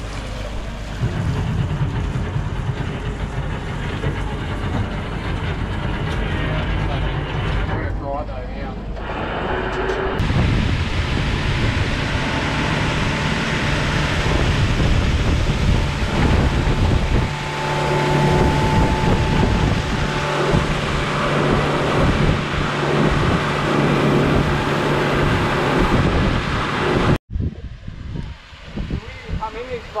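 Motorboat engine running steadily under way, with wind buffeting the microphone and water rushing past the hull. The noise cuts off abruptly near the end, leaving a much quieter stretch.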